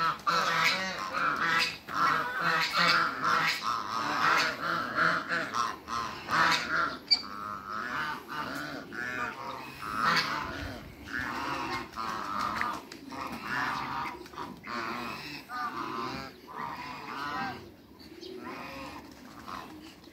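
A flock of barnacle geese calling: many short, high yapping honks overlapping, dense and loud at first, then thinning out and quieter over the second half.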